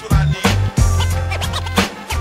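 Boom-bap hip hop beat in an instrumental break: a deep bass line and punchy drums, with turntable scratching cut in over them.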